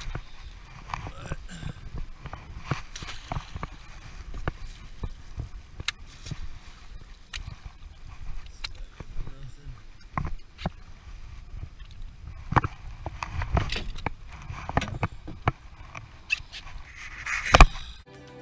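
Irregular knocks and clatter of gear against a small boat, over a low rumble of wind on the camera microphone; the loudest knock comes near the end.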